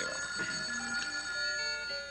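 Telephone bell ringing steadily, with soft background music notes underneath.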